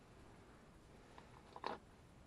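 Near silence: quiet room tone, with a few faint clicks and one short knock near the end.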